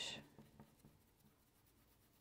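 Near silence with a few faint scratches of a flat paintbrush's bristles stroking paint onto cloth in the first second.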